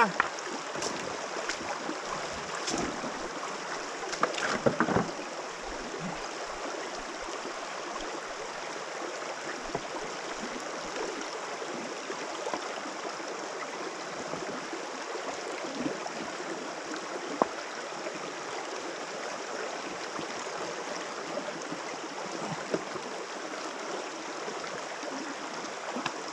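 A shallow mountain stream runs steadily over stones. There are a few sharp knocks in the first five seconds and one more about seventeen seconds in.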